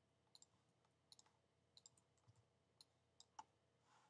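Near silence broken by several faint computer mouse clicks, scattered and some in quick pairs, as the cursor selects tools and places points.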